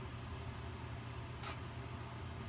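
Low, steady background hum, with one brief faint click about one and a half seconds in.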